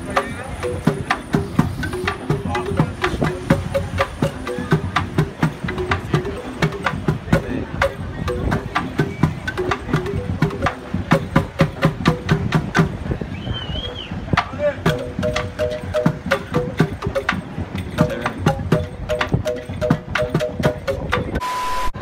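Live street percussion band: hand drums struck in a fast, steady rhythm, with a marimba-like pitched instrument playing repeated notes over them.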